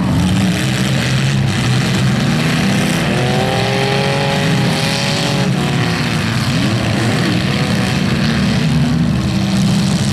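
Several bone-stock demolition derby cars' engines running and revving together, their pitch rising and falling as the drivers throttle up and back off, loudest in pitch swings around the middle.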